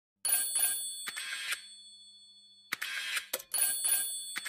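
Short bursts of bell-like ringing, about five of them, with a pause of about a second in the middle.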